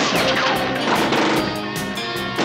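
Action-drama TV score music playing loudly, with a crashing sound effect mixed in.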